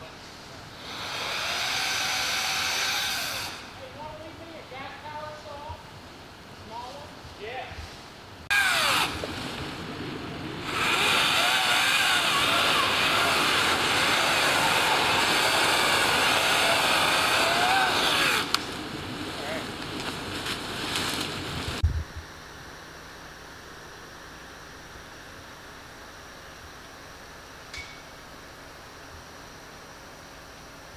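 Gas chainsaw cutting through a downed tree trunk, revving in loud bursts: a short cut near the start, a brief one about 8 s in, and a long one from about 11 to 18 s, dropping back to a lower idle between. About 22 s in the saw gives way to a steady, quiet outdoor hush.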